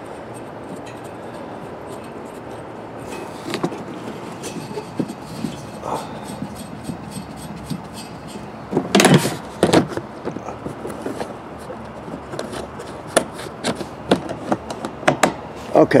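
Hands working the valve of a propane cylinder under a plastic tank cover: faint clicks, rubbing and handling knocks, with a louder brief noise about nine seconds in and a run of sharp clicks near the end.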